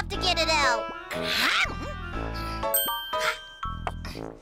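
Cartoon background music with wordless character vocalizations, and a bright chime about three-quarters of the way through.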